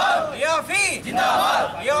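A crowd of men shouting protest slogans in call and response: a single voice calls out and the group answers together in a loud shout about a second in.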